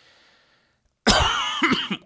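A man takes a soft breath, then coughs about a second in: one harsh, rough cough lasting under a second.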